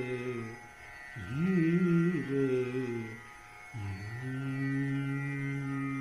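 A male voice sings a slow Hindustani classical alap in long, held notes, each reached by a glide from below. There are three phrases, with short breaks about a second in and about three and a half seconds in. The last held note is the longest.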